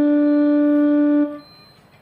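Casio CTK electronic keyboard holding one steady, sustained note in a wind-instrument-like voice, the last note of a melodic phrase. It stops sharply about a second in, leaving a faint background.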